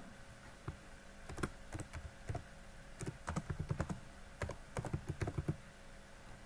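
Typing on a computer keyboard: a run of irregular key clicks, some in quick clusters, starting about a second in and stopping shortly before the end, as a short label is keyed in.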